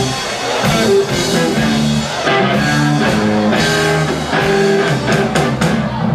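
Live rock band playing an instrumental intro: electric guitar, bass and keyboards holding changing chords over a drum kit, with cymbal hits.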